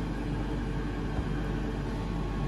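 Steady low hum of kitchen ventilation, with one faint tap a little past halfway as risotto is scraped from a steel pan with a silicone spatula.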